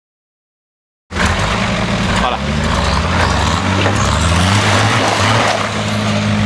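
Off-road 4x4 pickup's engine running and revving up and down as the truck crawls over rough ground, cutting in suddenly about a second in after silence.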